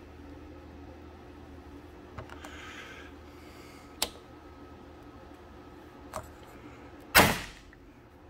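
A paintless-dent-repair bridge puller working a hot-glue tab on a steel hood panel: a few small clicks, one sharper click about halfway through, then a brief, louder burst of noise about a second before the end.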